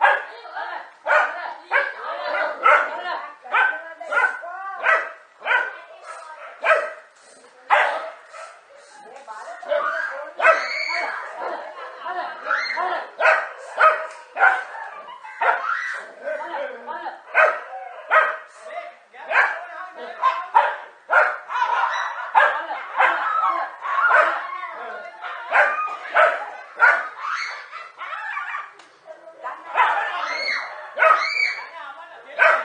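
A pack of dogs barking and yelping over and over, excited barking at a snake they are attacking.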